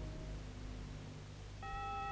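The last sustained note of an orchestra dying away, leaving a faint low hum. Near the end a steady, clean high tone comes in suddenly.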